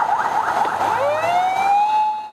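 Emergency vehicle siren sounding a fast, repeating rising yelp, then, about a second in, switching to a slow wail that climbs steadily in pitch.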